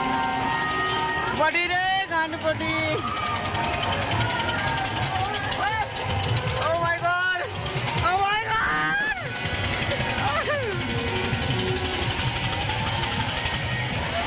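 Fairground din: loud music with a wavering singing voice over continuous crowd noise, with voices rising and falling.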